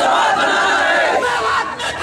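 Crowd of young men shouting protest slogans together, loud and continuous, dipping briefly near the end.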